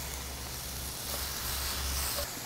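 Beef cubes sizzling in a frying pan: a soft, steady hiss.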